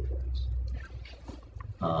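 A pause in a man's talk: a low rumble fades out about a second in, then a hesitant "uh" near the end.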